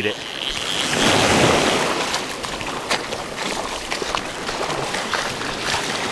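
Small surf washing up on a sandy beach, one wash swelling about a second in and then easing off, with wind on the microphone and scattered faint clicks.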